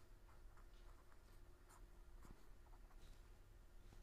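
Faint scratching of writing, short strokes at irregular intervals, over a low steady hum.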